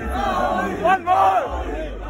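A concert crowd of fans yelling together, many voices at once, loudest about a second in, over a low steady rumble.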